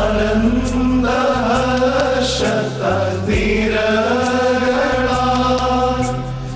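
A man singing a Christmas hymn in long, held, slow-moving notes over orchestral accompaniment with a steady bass.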